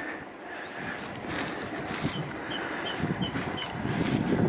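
Bicycle tyres rolling over concrete block paving, a steady noise that grows a little louder. From about two seconds in, a small songbird sings a high two-note phrase repeated about five times.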